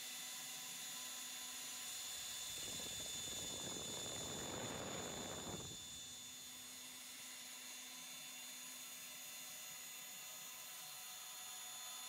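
CNC router spindle on a 5-axis mill running with a steady high whine while a small end mill finish-cuts polyurethane tooling board (PU650). A louder rushing cutting noise comes in about two and a half seconds in and drops away near the six-second mark.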